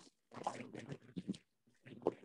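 Faint, indistinct speech in short broken bits, a student's voice coming through the online-lesson call.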